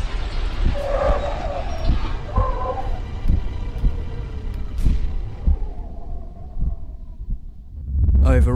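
Audio-drama sound effects of a car crash's aftermath: a heavy low rumble with a hiss and a few sharp clinks. It all dies down over the last couple of seconds.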